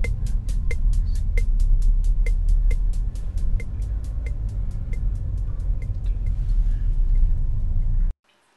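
Car turn-signal indicator ticking steadily, about three clicks a second, over the low rumble of the engine and tyres inside the cabin. The ticking fades near the end.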